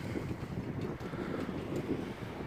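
Wind noise on a handheld camera's microphone: an uneven low rumble.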